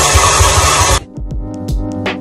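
Countertop blender running loudly at full speed, cutting off abruptly about a second in; electronic background music with a steady beat follows.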